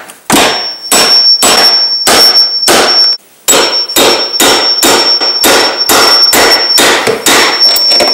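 Hammer blows on a steel door hinge pin of a 1997 Chevy S-10 pickup, driving the pin home through new hinge bushings. Steady strikes, about three a second, each with a high metallic ring, with a short pause a little after three seconds in.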